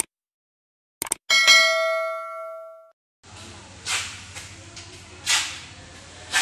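Subscribe-button animation sound effect: mouse clicks followed by a single bright bell ding that rings out and fades over about a second and a half. After that, a steady low room hum with a few brief swishes.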